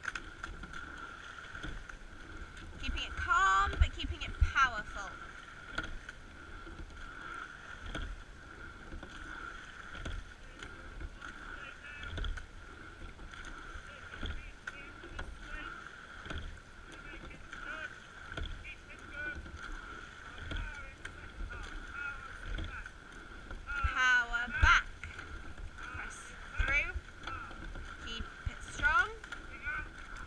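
Rowing shell under way: a short knock from the oars at each stroke, roughly every two seconds, over water and low rumble, with a steady high-pitched tone throughout.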